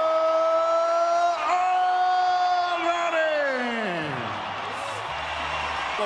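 A single voice holds one long, drawn-out shouted note at a steady pitch, then slides down and trails off about three and a half seconds in.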